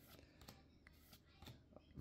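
Faint, soft flicks and slides of Pokémon trading cards being moved one behind another in the hand, with several light ticks.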